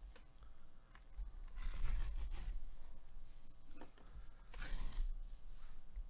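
Cardboard mailer envelope being torn open along its rip strip by hand: a rasping tear about two seconds in and a louder, sharper tear near the end, with handling of the cardboard between.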